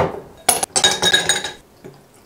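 A drinking glass set down on a wooden counter with a knock, then ice cubes dropped into it, clinking and ringing against the glass for about a second.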